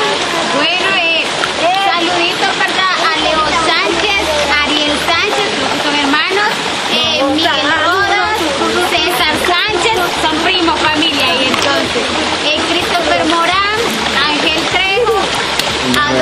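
Steady rush and splash of water running over rocks in a shallow stream, under people talking and laughing.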